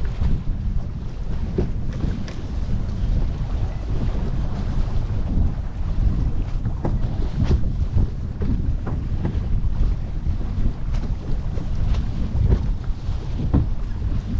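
Wind buffeting the microphone over the rush of water past a sailboat's stern and wake, with frequent short splashes and slaps of water.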